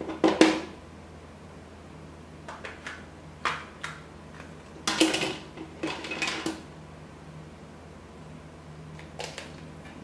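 Plastic clicks and clatters of a smartphone's back panel and battery being handled: separate sharp clicks, the loudest about half a second in, with short clattery runs near the middle and one more near the end.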